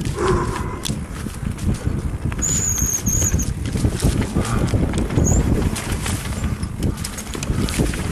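Mountain bike rolling down a rough dirt trail: wind on the microphone and tyres and frame rattling over the ground. A high-pitched brake squeal comes about two and a half seconds in and lasts about a second, with a shorter one near five seconds.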